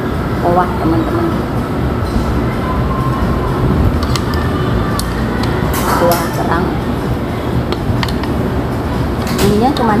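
Busy eatery ambience: a steady low rumble with voices in the background and a few light clinks of a metal spoon against a ceramic bowl.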